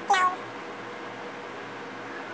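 A cat meowing once, briefly, just after the start, the call falling in pitch.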